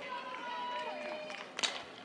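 Faint ballpark crowd murmur, then one sharp crack of a softball bat hitting the ball about a second and a half in.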